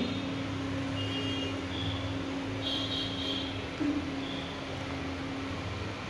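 Factory machinery conveying cement and lime powder, running with a steady hum: a constant low drone with a steady mid tone over it, and faint high-pitched whines that come and go.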